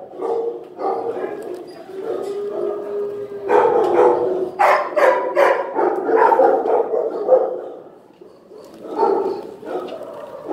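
Dogs barking in a shelter kennel block, several barks overlapping, with a held whine-like tone about two to three seconds in. The barking eases off about eight seconds in, then picks up again.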